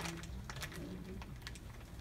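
Quiet room tone with a low steady hum and scattered faint clicks and taps.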